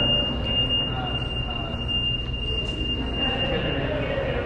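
A steady high-pitched whine that fades out near the end, over a constant low rumble of background noise.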